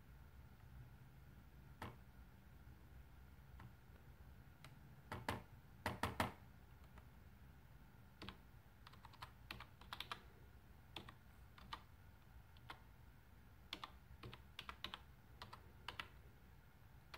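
Faint typing on a computer keyboard. There are scattered key presses and a few louder clicks about five and six seconds in, then a quicker run of keystrokes in the second half as a web address is typed.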